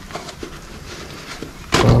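Faint, scattered clicks and clinks of a suspension strut, coil spring and spring compressors being handled on a workbench once the compressors have been wound back off. A man's voice cuts in near the end.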